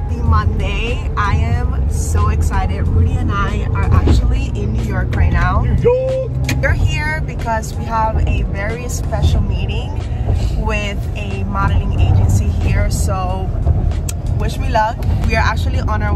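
Steady low rumble of a car cabin on the move, loud enough to muddy a woman talking over it.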